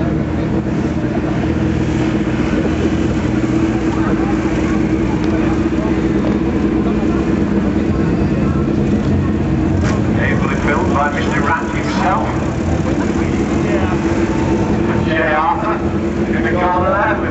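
Ural 750 cc sidecar motorcycle's air-cooled flat-twin engine running at a steady speed.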